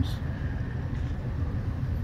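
A vehicle engine running, a steady low rumble with no sudden events.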